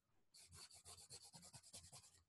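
Faint, fast scratchy rubbing, about a dozen even strokes a second, starting a moment in and lasting about a second and a half.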